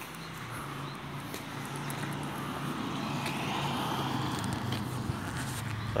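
A motor vehicle's engine running steadily, growing louder over the first few seconds and easing off a little near the end.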